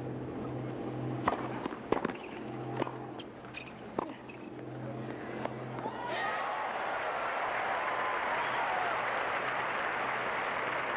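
A tennis rally: a ball struck by rackets, five sharp hits spaced one to one and a half seconds apart. About six seconds in, a stadium crowd breaks into steady cheering and applause as the point is won, here by a topspin lob over the net player.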